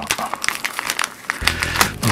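Crinkling and a quick run of crisp little clicks from old Bikkuriman stickers being handled and leafed through.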